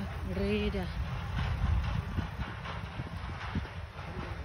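Low wind rumble and buffeting on a phone microphone while riding a bicycle along a paved path, with small irregular knocks from the ride.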